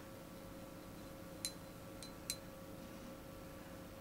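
Three light clinks of a watercolour brush against the paint palette and pans as it picks up paint, one about a second and a half in, then two close together a little later, over a faint steady hum.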